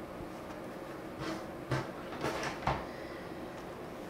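Quiet handling sounds on a drawing table: a few faint, short knocks and rustles, spread over the middle couple of seconds, as a flat board is lifted and set aside, over a steady low room background.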